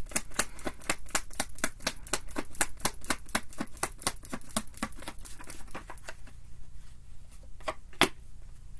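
A tarot deck being shuffled by hand: a rapid run of crisp card clicks, several a second, that thins out about six seconds in.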